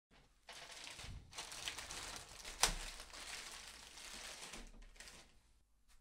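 Plastic courier mailer bag crinkling and rustling as it is handled and opened, with one sharper crack near the middle.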